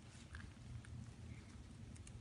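Faint, sparse clicks and rustles of fingers handling and teasing apart a peace lily's pot-bound root ball on newspaper, over a low room hum.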